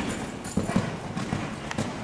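Horse cantering on a sand arena surface: dull hoofbeats in a repeating rhythm, a cluster of beats about every half second.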